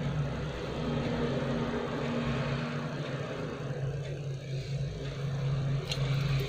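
A steady low mechanical hum under a faint even hiss, with a slightly higher steady tone joining it for about two seconds starting about a second in.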